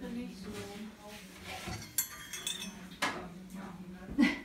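Porcelain tableware clinking: a teaspoon and cup knocking against a china saucer, two sharp clinks about two and three seconds in, the first with a bright ring.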